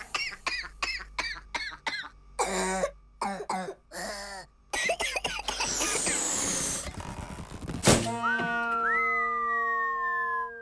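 A cartoon cockroach's laughter in short repeated bursts, about four a second, for the first few seconds. About eight seconds in, a sharp hit is followed by held tones and slowly falling whistle-like glides.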